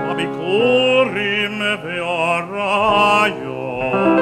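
A cantor's tenor voice singing a cantorial (hazzanut) melody with wide vibrato, gliding between long held notes, over piano accompaniment.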